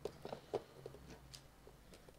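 Faint, scattered light taps and rustles of hands handling a small printed cardboard retail box, with a sharper click about half a second in.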